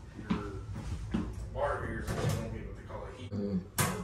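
Conversation in a room, with one sharp click near the end.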